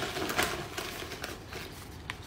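Rustling and light crinkling of small wrapped earring packets as a hand rummages through a box of them.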